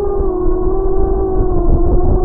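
Electric motors and propellers of a small quadrotor biplane VTOL drone running, heard from a camera on the airframe: a steady buzzing hum that sags slightly in pitch, over low rumbling prop wash and wind on the microphone.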